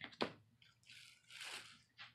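Faint handling of the egg tub's plastic covering: a click, then two short crinkly rustles of plastic film.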